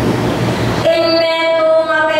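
A loud, rough rushing noise, then a little under a second in a woman's voice starts holding one long, steady high note.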